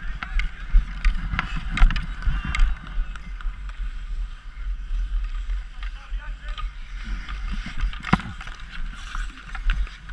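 Hockey skates scraping and gliding on outdoor ice, with wind rumbling on the microphone and several sharp clacks of sticks and puck, the loudest about eight seconds in.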